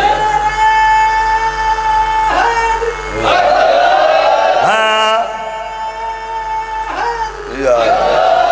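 A man's voice chanting a sung recitation in long held notes, about three of them, each sustained for around two seconds with brief breaks and a rising glide into each note.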